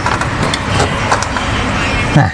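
Road traffic running steadily, a mix of engine rumble and road noise, with a few faint clicks over it.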